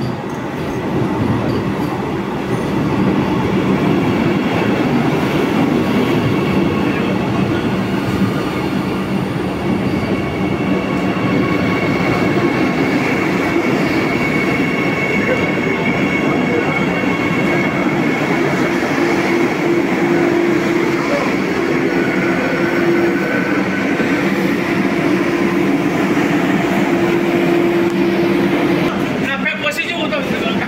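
Vande Bharat electric multiple unit train rolling past along the platform as it arrives. Its steady rolling noise carries long, drawn-out whining tones, and the sound changes abruptly just before the end.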